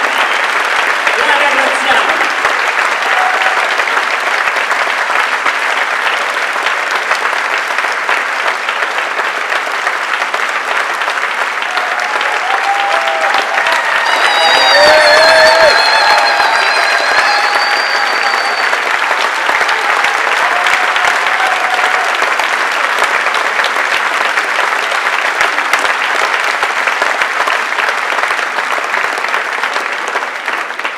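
Concert-hall audience applauding steadily. It swells to its loudest about halfway, where a few voices call out and a whistle rises above the clapping.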